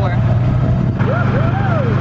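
Golf cart driving along, its motor giving a steady low drone.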